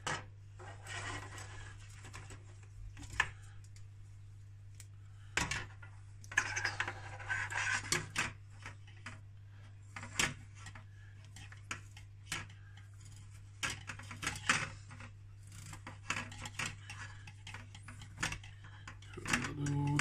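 Nylon mesh netting rustling and rubbing as it is worked over a plastic breeder-box frame, with scattered light clicks and taps of the plastic frame against the tabletop, over a steady low hum.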